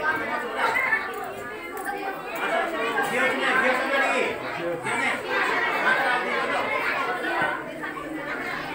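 Indistinct chatter of several people talking over one another, with no single voice standing out.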